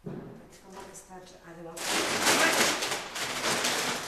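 A stainless-steel bakery dough mixer starting up with flour in its bowl: a sharp knock at the start, then about two seconds in a loud, steady rushing noise sets in and keeps running.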